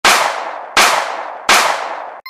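Three loud, sharp crash-like hit sound effects about three quarters of a second apart, each a burst of hiss-like noise that dies away quickly.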